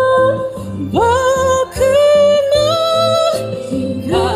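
Woman singing into a microphone, holding long notes with a sharp upward slide about a second in, over steady low instrumental accompaniment.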